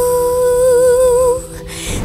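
Female voice singing one long held note with vibrato on a 'tu' syllable, which stops about a second and a half in, over a steady sustained backing drone in a film-song intro.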